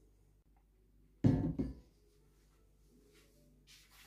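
A single short, loud knock about a second in, lasting about half a second, over a faint steady low hum.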